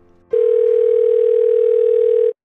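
Telephone ringback tone: one steady ring of about two seconds, starting a moment in and cutting off suddenly. It is the sound of a call ringing through on the line, waiting to be answered.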